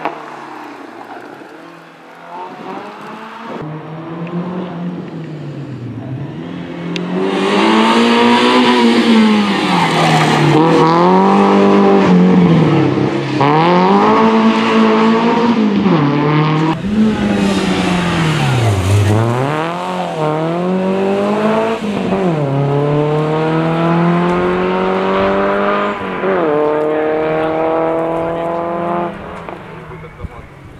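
Renault Clio Sport rally car's four-cylinder engine revving hard, its pitch rising and falling again and again every couple of seconds, then a long rising pull through a gear near the end.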